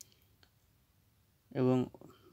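Two short clicks over near silence, one at the start and a fainter one about half a second in, then a voice starts speaking near the end.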